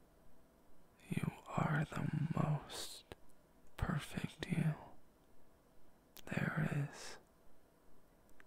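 A man's soft, close-up whispered voice in three short phrases, with a couple of sharp clicks between them.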